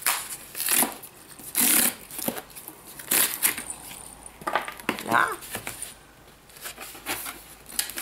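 A cardboard shipping box being opened by hand: a series of short rasping tears and scrapes of cardboard and packing, the loudest under two seconds in.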